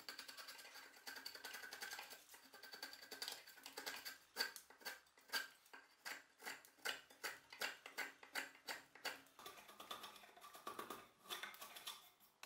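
A steel mortise chisel pushed by hand across the end grain of a wooden board, its edge scraping and shaving the wood. A steady run of scraping at first, then quick separate strokes about two or three a second, and a denser run of scraping near the end.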